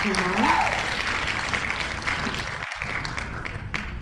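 Applause sound effect marking the winner of a random name-picker wheel spin, a dense patter of clapping that gradually fades toward the end.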